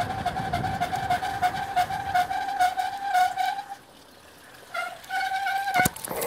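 Bicycle brakes squealing in one steady high tone as the bike slows, dropping out for about a second past the middle, then coming back and cutting off just before the end. Rapid ticking from the coasting freewheel and wind on the microphone, which dies away in the first half, run beneath it.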